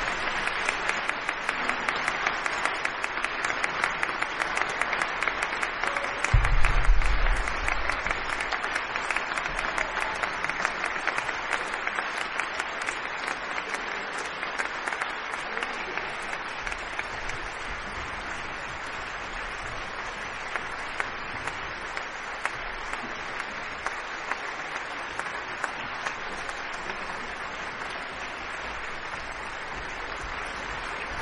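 Audience applauding, a dense even clapping that slowly thins and grows quieter. A brief low rumble about six seconds in is the loudest moment.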